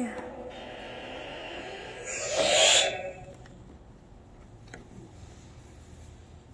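A spoken word rings on in the echo of a concrete parking garage and dies away. About two and a half seconds in comes one short, loud rush of noise, then quiet room tone with a faint click near the end as the phone is handled.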